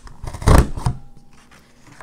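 Hand-operated boot-print border punch pressed down once through cardstock: one loud clunk about half a second in, as the die cuts a row of boot prints. Fainter paper rustling follows.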